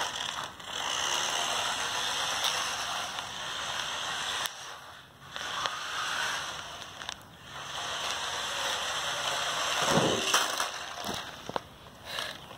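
Small electric motor and plastic gears of a toy-grade 1/24-scale RC truck whirring in stretches of a few seconds on full-on throttle, cutting out briefly twice.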